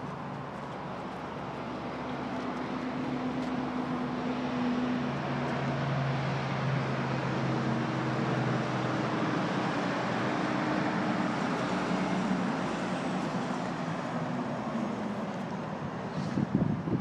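Motor vehicle engine hum over steady outdoor traffic noise, swelling a couple of seconds in and easing off near the end.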